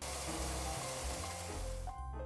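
Arepas sizzling as they cook on hot surfaces, an even frying hiss that fades out shortly before the end.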